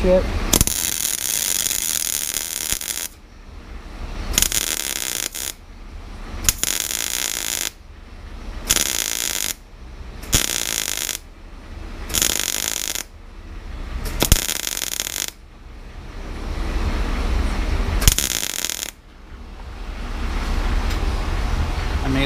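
Electric arc welder crackling in bursts as a weld blob is built up on a broken exhaust stud in an LSX cylinder head: one long burst of about two and a half seconds, then about eight shorter bursts of about a second each, with a low hum in the gaps.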